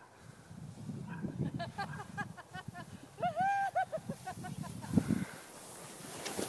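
Sled sliding and scraping down packed snow, a rough crunchy rush, with a young child's high voice calling out in short bursts and one longer held call about three seconds in.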